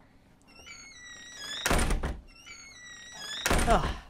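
Two heavy thuds, about two seconds apart, over faint high chirping.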